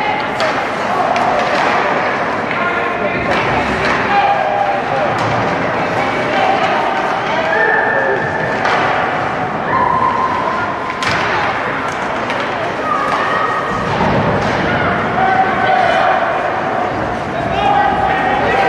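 Ice hockey game sounds: voices calling and shouting across the rink, with sharp knocks and thuds from sticks, puck and players hitting the boards.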